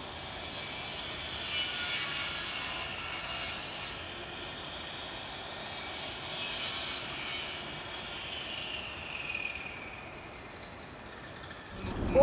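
Distant city traffic noise with long, high-pitched squeals that come and go in two spells, the first about a second in and the second past the middle.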